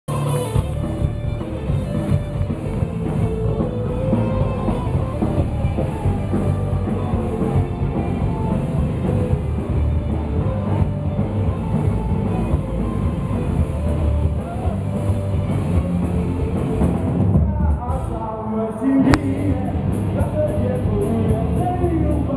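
Rock band playing live in a concert hall, heard from among the audience: drums, electric guitars and bass at full volume. Near the end the low end drops out for a moment and a sharp click sounds, then the band comes back in.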